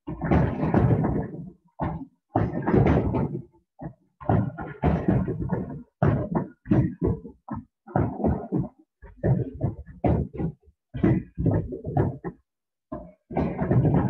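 Freestanding heavy bags being kicked again and again in a front-kick drill, a run of irregular thuds about one or two a second. The sound drops out to silence between many of the hits.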